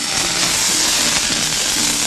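A burning fuse hissing loudly and steadily as it burns down, starting suddenly.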